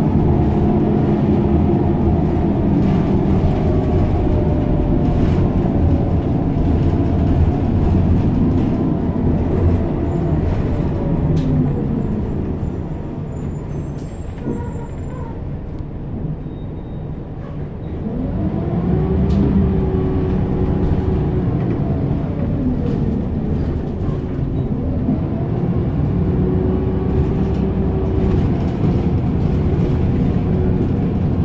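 Bus engine and drivetrain heard from inside the passenger cabin: the pitch falls as the bus slows about eleven seconds in, it runs quieter for several seconds, then the pitch rises as it pulls away about eighteen seconds in, dipping briefly near twenty-four seconds before rising again.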